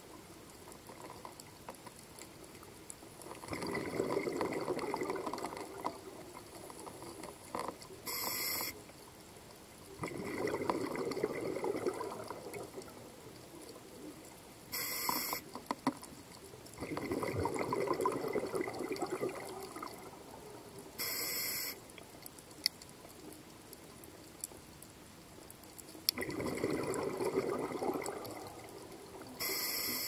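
A scuba diver breathing through a regulator underwater: four rushes of exhaled bubbles lasting two to three seconds each, about seven seconds apart, each followed by a short hiss of the inhale.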